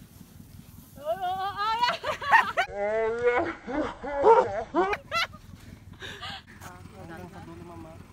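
Several people shrieking and laughing with loud, quivering voices for about four seconds, then quieter laughter and chatter.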